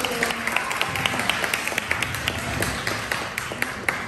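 A small group of people clapping after a speech, with faint voices mixed in.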